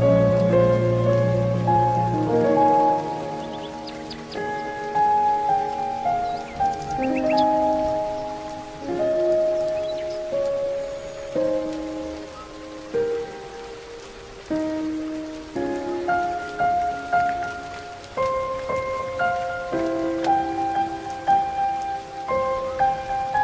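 Slow, gentle piano music, single notes and soft chords sounding and fading one after another over a faint steady hiss. A few brief high bird chirps come through about three to four seconds in and again around seven seconds.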